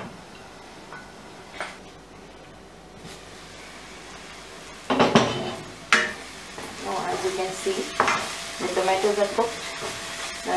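Masala paste sizzling in oil in a nonstick pan, quiet at first. About five seconds in come sharp knocks, then a wooden spatula stirs and scrapes the paste around the pan while it sizzles.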